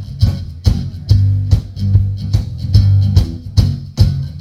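Live band playing an instrumental passage: drum kit keeping a steady beat of about two hits a second under a strong bass line and strummed guitars.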